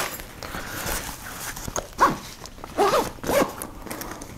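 Nylon backpack zipper pulled in a few short strokes, each giving a brief whirring zip, with fabric rustling as the pocket is worked open.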